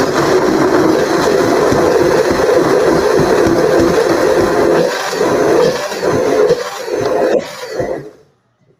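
Countertop blender running at full speed, chopping corn kernels. It runs loud and steady, wavers slightly in the last few seconds, and cuts off just before the end.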